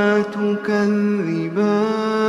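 A man's voice in melodic Quranic recitation (tajweed), drawing out long held notes; the pitch dips about halfway through and climbs back.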